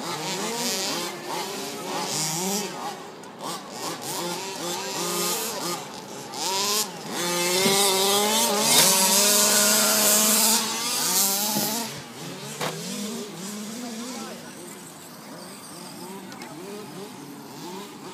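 Radio-controlled model truck's motor whining and revving up and down as it is driven hard across grass. It is loudest in the middle as it passes close, then fades as it moves off.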